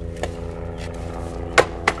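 Two sharp knocks about a second and a half in, a quarter second apart: a plastic drift trike knocking on the asphalt driveway as the fallen rider grabs it and pushes himself up. A steady low hum runs underneath.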